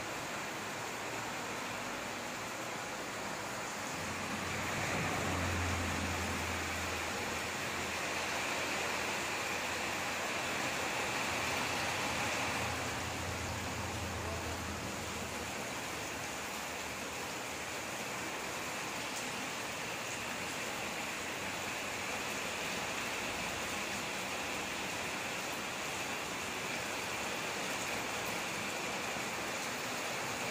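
Steady background hiss, with a low hum that comes in about four seconds in and fades out a little past the halfway point.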